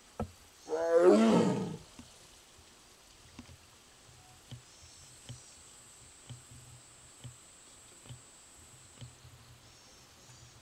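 Amur tiger giving one loud, drawn-out moaning call about a second in, the call of a tiger separated from its sibling. Faint soft ticks follow about once a second.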